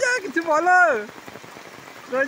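Steady rain falling, an even hiss. A person's voice speaks briefly over it in the first second.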